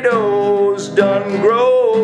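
A country-style song: a voice singing held, wavering notes over acoustic guitar.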